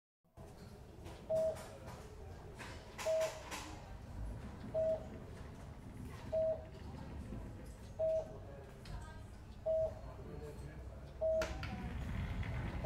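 Hospital bedside patient monitor beeping at a steady pace, a short single mid-pitched beep about every 1.6 seconds, seven times, over a low room hum.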